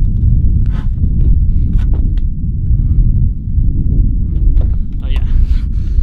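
Wind buffeting the microphone with a loud, steady low rumble, over scattered short knocks and scuffs from someone climbing down the back of a van by the open rear door.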